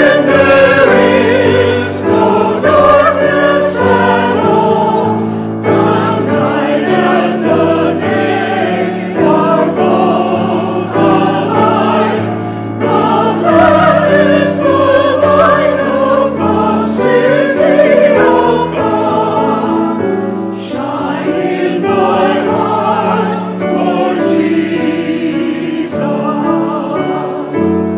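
Mixed church choir singing a sacred anthem, accompanied by piano.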